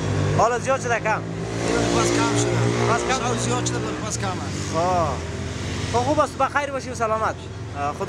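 A man talking in the street, with a motor vehicle's engine running close by for the first few seconds as traffic passes.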